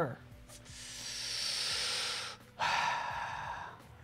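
A man breathing heavily into a close microphone: two long, breathy sighs, the first about two seconds, the second shorter and lower. They come across as exasperation while the software misbehaves.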